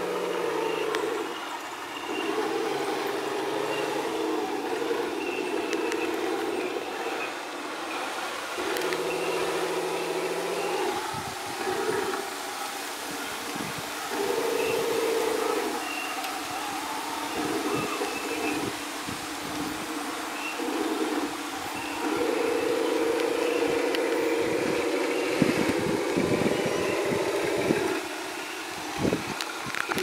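Radio-controlled model Nashorn tank destroyer driving in stop-and-go spells: a steady mechanical hum that starts and stops every few seconds, with short rattling clicks near the middle and toward the end.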